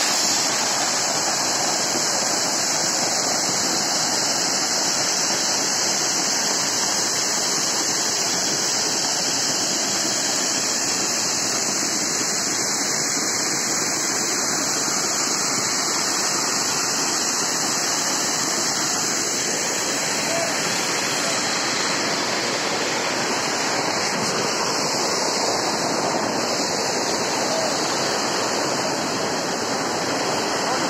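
Small waterfall pouring down onto rocks and into a shallow pool, heard close up as a steady, even rush of falling and splashing water.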